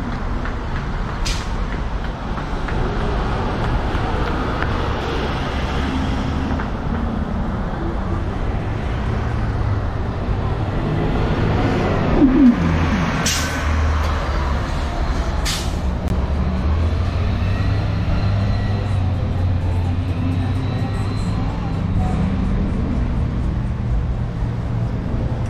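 Street traffic: motor vehicle engines running and passing, with one vehicle passing louder about halfway through and its engine note falling. A few short, sharp hisses break through, once near the start and twice just after the middle.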